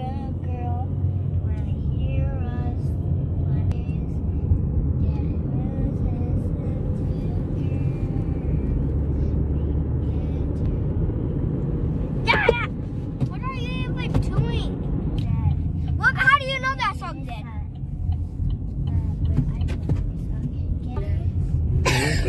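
Steady low rumble of road and engine noise inside a moving Chevrolet car, with a few short bursts of voices about halfway through.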